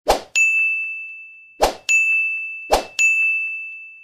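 Three sound-effect dings from an animated subscribe end screen, each a single high ringing chime that fades over about a second, and each set off by a short swish just before it.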